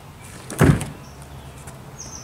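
A single heavy thump about half a second in: a kick scooter banging down onto a board ramp. Faint bird chirps sound in the background.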